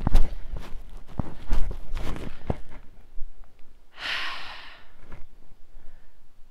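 Footsteps on a dirt and grass path for the first few seconds, followed about four seconds in by one long breathy sigh.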